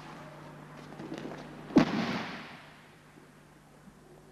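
A judoka thrown with a foot sweep lands on the tatami mat about two seconds in: one sharp slap-and-thud of a breakfall that echoes briefly in the hall.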